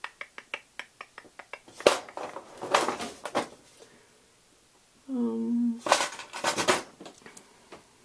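Small metal cake-decorating piping tips clinking as they are rummaged through: a quick run of light clicks, a sharper click just before two seconds in, then louder rattles around three and six seconds in.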